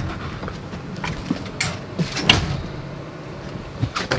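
A door and footsteps as someone steps into an ice-fishing trailer: a few scattered knocks and clicks, the sharpest two about midway, over low handling noise.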